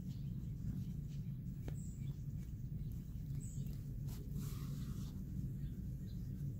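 Steady low background hum with a few faint soft rustles, and two brief high chirps about two and three and a half seconds in.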